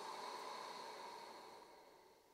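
A long, faint Ujjayi exhalation through the nose, the back of the throat gently narrowed to make a soft, even ocean sound that fades away near the end.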